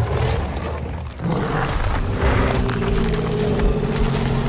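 Dramatic film-trailer music mixed with sound effects. A dense, sustained swell of held notes builds about a second in over a deep rumble.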